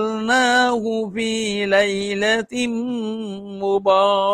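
A man reciting the Quran in Arabic in a melodic chant, holding long notes at a steady pitch with small turns, and pausing briefly for breath about a second in and again past halfway.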